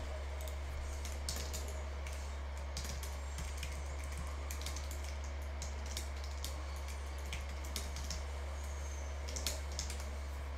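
Typing on a computer keyboard: irregular, scattered key clicks, with a steady low hum underneath.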